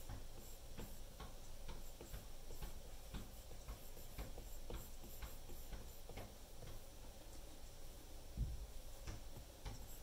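Apple Pencil tip tapping and sliding on an iPad Pro's glass screen while sketching: quiet, irregular light ticks, with one dull low bump about eight seconds in.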